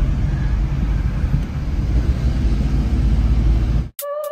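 Steady low rumble of a car in motion, heard from inside the cabin: engine and tyre noise on the road. It cuts off abruptly just before the end.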